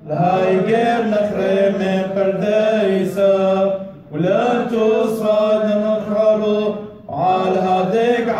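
Men's voices chanting a Syriac liturgical hymn of the Assyrian Church of the East together in long, held, slowly moving phrases. The chant breaks off briefly about halfway through and again near the end, then resumes.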